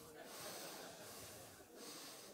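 Faint breathing into a handheld microphone during a pause in speech, over the low hush of the room.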